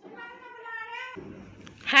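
Cat meowing: a long, steady meow, then a louder meow that falls steeply in pitch near the end.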